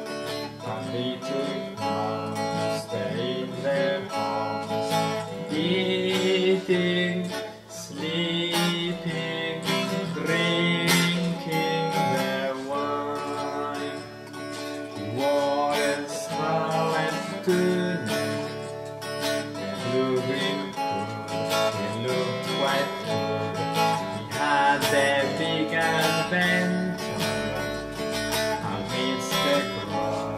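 A small band playing a guitar-led cover of a 1960s psychedelic folk-rock song, with sustained pitched notes over the strummed guitar.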